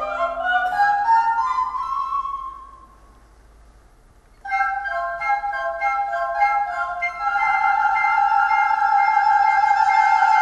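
Classical orchestral accompaniment: quick runs of high notes, a short pause about three seconds in, then repeated notes and sustained chords. A soprano's held, wavering note enters about three-quarters of the way through.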